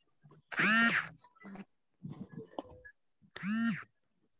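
A short pitched call, heard twice about three seconds apart, each rising and then falling in pitch, with faint talk between.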